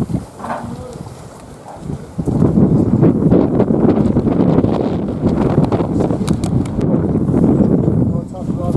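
Loud rustling and rubbing noise on the camera's microphone, starting about two seconds in and going on steadily, with many small clicks through it: the camera being handled against clothing and buffeted by wind.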